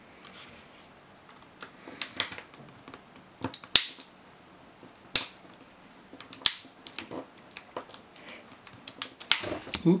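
Flat-blade screwdriver prying at the seams of a plastic laptop battery case, giving an irregular series of sharp plastic cracks, clicks and scrapes as the casing's clips and glued joints are forced, the loudest about four seconds in.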